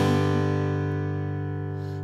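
An acoustic guitar chord strummed once at the start and left to ring, slowly fading, over a held low bass note.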